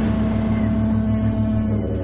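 A foghorn sounding one long low blast, holding a steady note that cuts off near the end, over a low pulsing rumble.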